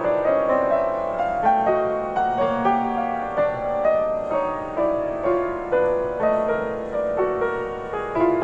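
Solo piano improvisation: a steady stream of notes in the middle register, several new notes each second.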